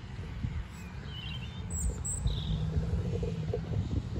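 Outdoor ambience: a steady low rumble of wind on the microphone, with a few short bird chirps about one and two seconds in.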